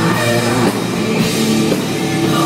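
Live heavy metal band playing loudly, drum kit and guitars, with a female lead singer's voice on top.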